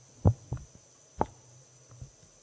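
Three dull thumps, two close together near the start and one a little past a second in, over a faint low hum.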